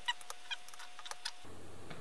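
Small steel hex keys ticking lightly against a bolt head and the mount's metal parts while a small bolt is unscrewed: a scattered run of faint clicks.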